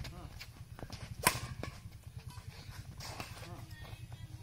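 Badminton racket striking a shuttlecock in a rally: one sharp crack about a second in, with a few lighter hits and footsteps on grass around it. A steady low hum sits underneath, with faint voices in the background.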